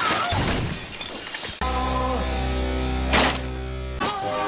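Film soundtrack: a crash with a noisy, breaking quality, then from about a second and a half in a steady held chord of music with deep bass. A short, sharp noisy hit cuts through the chord about three seconds in.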